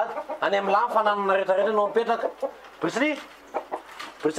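Chickens calling from a wire-mesh coop, mixed with a man talking.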